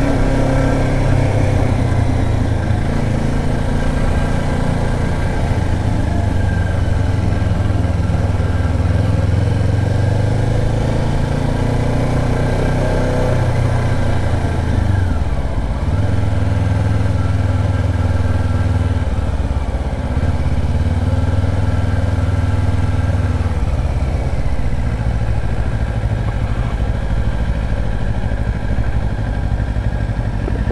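2024 Kawasaki Ninja 500's parallel-twin engine running steadily at low road speed, its note dipping briefly about halfway through before picking up again.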